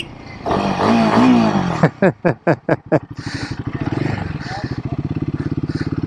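Royal Enfield Himalayan 450's single-cylinder engine running at low revs, an even, rapid train of exhaust pulses through the second half, with the rider laughing over it.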